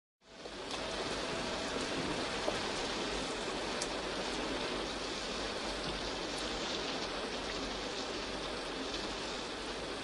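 Steady rain falling, with a few sharper drop ticks here and there; it fades in over the first half-second.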